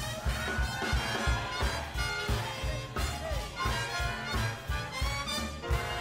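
Live swing big band playing: horn lines over a steady beat from bass and drums.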